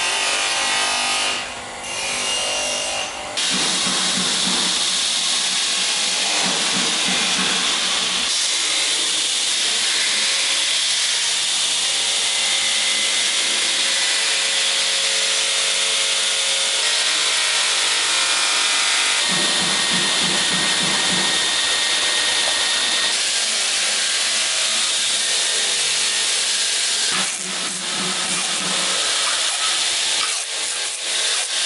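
A workpiece pressed against a spinning abrasive wheel on an electric motor: a steady hissing rasp that shifts in tone several times.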